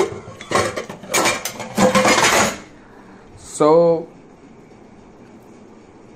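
Stainless steel pots and utensils clattering and scraping for about two and a half seconds, then a low steady background.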